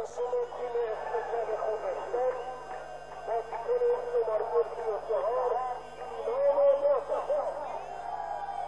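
Football stadium crowd on a TV broadcast: many overlapping voices shouting and chanting, with a few held tones mixed in.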